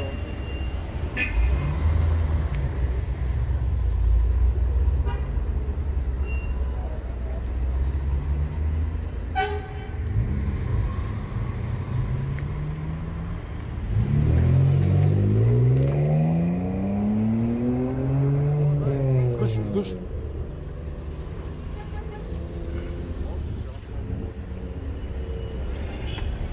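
City street traffic: vehicle engines running with a steady low rumble, a short car-horn toot about a third of the way in, and past the middle a vehicle engine rising in pitch over a few seconds, then falling away.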